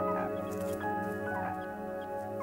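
Background music of long held notes, with a few short high calls from meerkats over it.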